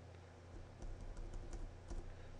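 Computer keyboard keys tapped in a quick series of faint presses, starting about half a second in, as text is deleted from a command line.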